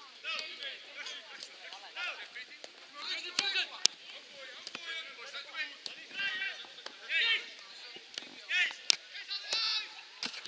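Footballers shouting short calls to each other across the pitch, with a few sharp smacks of the ball being kicked, the loudest about four seconds in and again near nine seconds.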